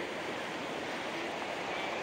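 Steady rushing of a fast-flowing river: an even, unbroken noise.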